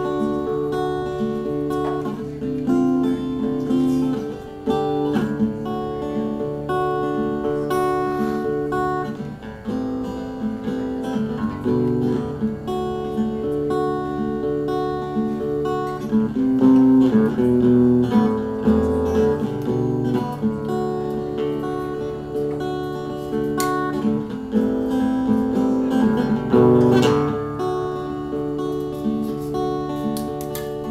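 Acoustic guitar strummed solo, playing an instrumental passage of changing chords.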